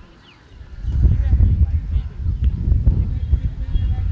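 Loud, uneven low rumble that starts about a second in, with faint voices in the background.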